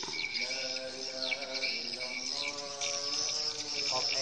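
Swiftlets calling around a swiftlet house: a steady high-pitched trill with short, downward-sweeping chirps over it. A held, droning tone sounds underneath, twice.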